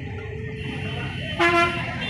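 A vehicle horn gives one short toot about one and a half seconds in, over steady street traffic noise.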